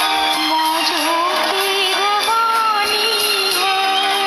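A woman singing a slow Hindi film melody into a microphone, with long held notes whose pitch bends and wavers, over steady sustained instrumental backing.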